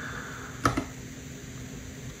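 A single computer-keyboard keystroke about two-thirds of a second in, with a lighter tick right after it: the Enter key being pressed to launch a script. A faint steady room hum lies under it.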